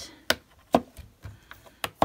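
Round magnets clicking down onto a Ranger Make Art magnetic board to hold card strips: three sharp clacks, the middle one loudest, with a few faint taps between.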